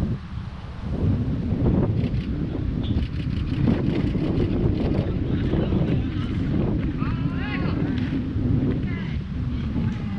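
Wind buffeting the microphone with a steady low rumble, with voices calling out across the field; a couple of longer, rising and falling shouts come about seven seconds in.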